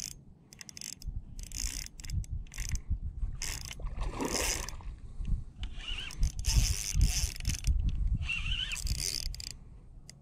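Spinning reel being cranked in irregular bursts to play a hooked redfish, its gears whirring and clicking against the load of the fish. Wind buffets the microphone with low rumbles.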